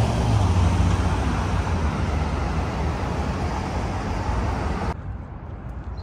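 City street traffic: a car passes close by, its engine and tyre rumble loudest at the start and fading over the next few seconds. About five seconds in, the sound drops abruptly to quieter street background.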